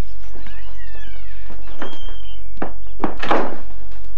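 Footsteps and a door as people come in from outside, with thuds about three seconds in. There are a few high falling squeaks in the first second.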